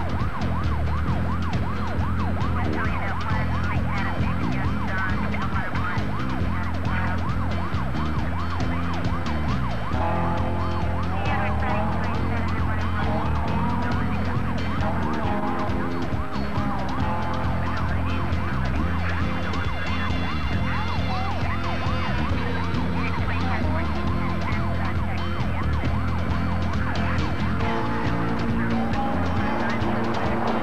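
Emergency vehicle siren rising and falling rapidly over a steady low hum. From about ten seconds in, slower gliding tones take over.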